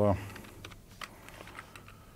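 Typing on a laptop keyboard: a handful of irregular keystrokes as a line of code is entered.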